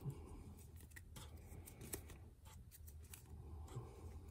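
Faint handling of plastic-sleeved game cards: a few soft clicks and slides as four cards are drawn off a deck one by one and gathered into a hand.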